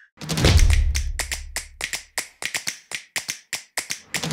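Sound effects for an animated logo intro: a deep bass hit that fades over about two seconds, under a quick run of sharp taps, about four or five a second.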